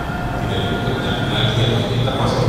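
A questioner's voice from the audience, distant and indistinct, over a steady hum, asking a question.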